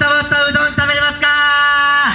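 A loud, amplified voice chanting in short, even-pitched syllables, then holding one long note for about the last second, like the sung opening call of a yosakoi dance number.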